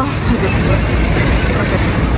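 Steady street traffic noise with a low rumble from passing and idling cars.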